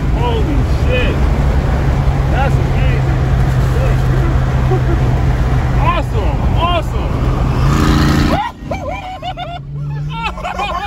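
Car running at highway speed with the window down: loud wind and road noise over a steady low engine hum, with voices mixed in. About eight and a half seconds in the noise drops off sharply to a quieter cabin sound.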